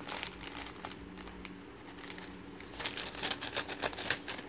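Plastic courier mailer bag crinkling as it is handled and cut open with scissors. The crackling gets denser and louder near the end as the scissors work through the plastic.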